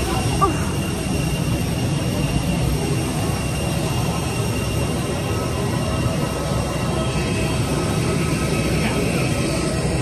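Steady jet aircraft noise on an airport apron: a constant high whine over a low rumble, with no rise or fall.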